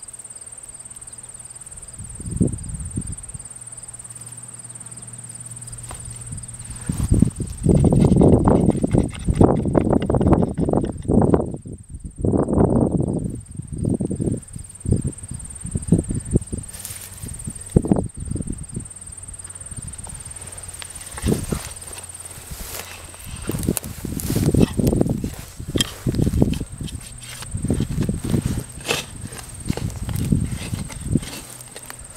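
Hand digging in loose soil: a digging fork driven into the ground under a boot and levered, with hands scraping through dirt, giving a run of irregular thuds and scrapes that start sparse and turn busy about a quarter of the way in.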